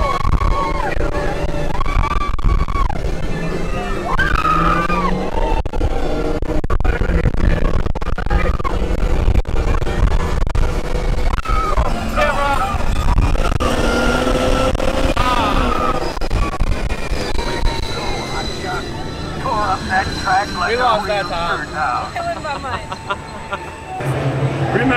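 Open ride vehicle of Radiator Springs Racers speeding along its outdoor race track: steady wind rush and rumble of the car at speed, with riders' voices and ride music mixed in. The rush eases off near the end as the car slows.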